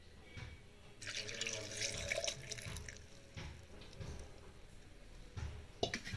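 Milk being poured into a stainless-steel mixer-grinder jar over blanched almonds, a splashing trickle that starts about a second in and tails off after about two seconds, with a light knock near the end.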